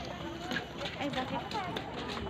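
Voices of people talking, not in clear words, with a scattering of sharp clicks and taps.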